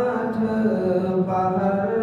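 A man's voice chanting an Urdu munajat (devotional supplication) unaccompanied, holding long, slow melodic notes.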